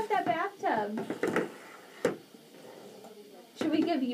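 A young child's voice sounds without clear words, with one sharp knock about two seconds in as a plastic baby bathtub is handled on a table.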